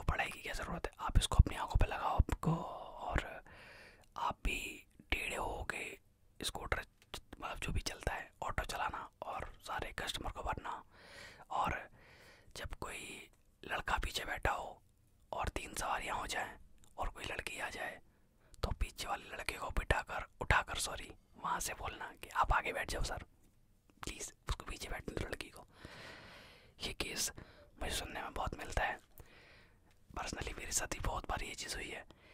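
A man whispering in Hindi, in short phrases broken by brief pauses.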